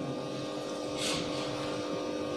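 A steady hum of a few even tones over faint background noise, with a brief soft hiss about a second in.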